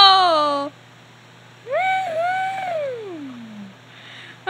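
A high-pitched voice-like call that rises, holds, then slides steadily down in pitch over about two seconds. It follows the tail of a shorter falling call right at the start.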